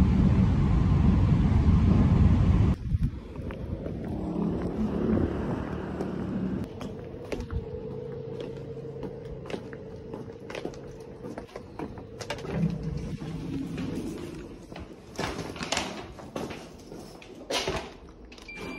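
Commuter train running, its rumble heard from inside the carriage, cut off suddenly a little under three seconds in. Then much quieter footsteps with scattered clicks and knocks and a faint steady hum, and a few brief louder noises near the end.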